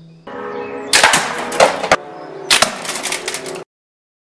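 Loud crashes with sharp cracks, once about a second in and again at about two and a half seconds, over steady music; the sound cuts off abruptly near the end.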